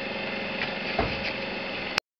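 Steady low hum and hiss, with a dull thump about a second in and a click as the sound cuts off at the end.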